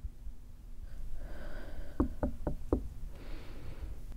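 Four quick knocks on a bedroom door, evenly spaced about a quarter second apart, about two seconds in.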